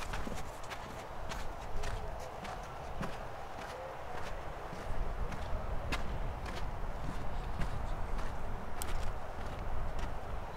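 Footsteps on a wooden boardwalk: hard knocks at a walking pace, about two a second, over a low wind rumble.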